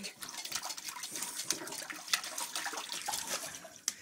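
A dog splashing in the water of a toilet bowl with its head down in the bowl: an irregular, continuous run of small splashes and sloshes.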